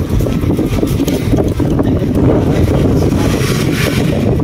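Wind buffeting the microphone while riding a bicycle, a steady low rumble throughout.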